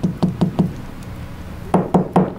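A small fly-tying hair stacker knocked against the tying bench to even up deer-hair tips: several quick sharp taps in the first second, a pause, then another tap near the end.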